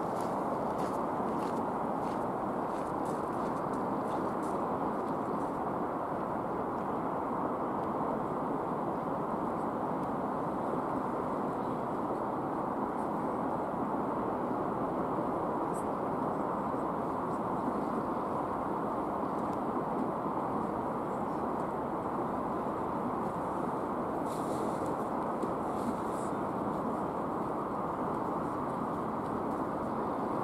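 A steady, even rushing noise that holds the same level throughout, with no clear engine or motor tone in it.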